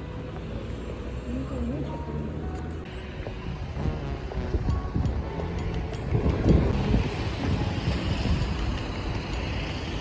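Street traffic noise with wind on the microphone, swelling in the middle as vehicles pass, then easing.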